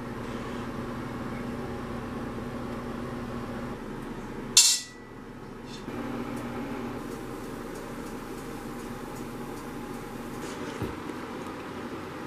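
Steady low room hum in a kitchen, broken once by a short, sharp clack about four and a half seconds in.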